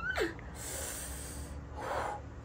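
A woman's short pitched voice sound that falls sharply in pitch, followed by a long breathy exhale and another short breath near the end.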